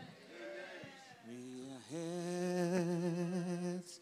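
A voice singing slowly: a short wavering phrase, then one long held note that stops just before the end.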